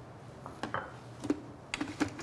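A few light clicks and taps of a utensil against a dish, spaced out, with the sharpest tap a little past halfway.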